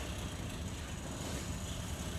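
Steady low background rumble with a faint even hiss and no distinct events.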